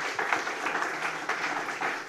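Audience of a few dozen people applauding: dense, steady clapping from many hands.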